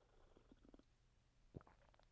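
Near silence with faint swallowing as a man drinks from a mug, a few soft gulps in the first second, then a single soft click about one and a half seconds in.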